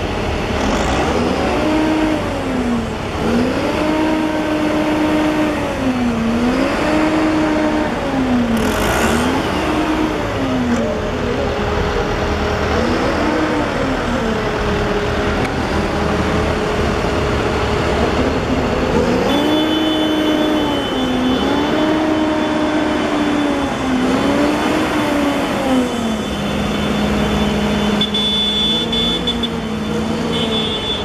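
Diesel engines of large John Deere farm tractors running as they drive past in a procession. Over them a pitched tone rises, holds and falls again roughly every two seconds.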